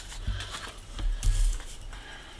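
A paper scratch-off lottery ticket being handled and laid on a wooden table: light paper rustling with a few soft knocks.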